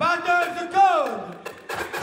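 A voice through the hall's PA, held on drawn-out notes that slide down in pitch about a second in, with a few short sharp knocks near the end.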